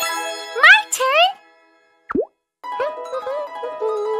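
Cartoon sound effects: two quick rising whistle-like sweeps in the first second and a single plop about two seconds in, then light plucked-string children's music starts as a lowercase x is traced.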